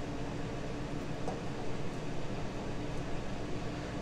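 Blackstone air fryer running: a steady whirring hiss with a faint hum.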